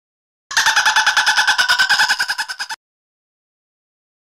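Indian peafowl (peacock) giving a fast run of short honking calls, about ten a second, starting about half a second in and lasting some two seconds, fading near the end.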